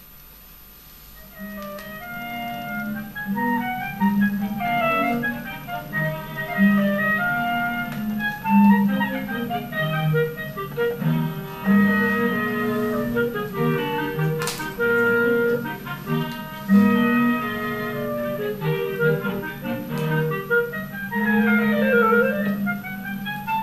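A small clarinet-and-strings chamber ensemble playing, a clarinet melody over a low bowed line from a cello. The music comes in about a second and a half in.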